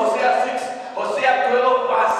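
A man preaching into a handheld microphone: speech only.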